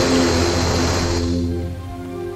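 Air hissing out of a Jeep tyre's valve as the tyre is let down, fading out after about a second and a half, over background music.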